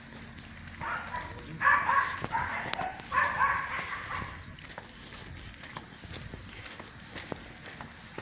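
A dog barking in a quick series of barks, in three bursts from about a second in to about four seconds in.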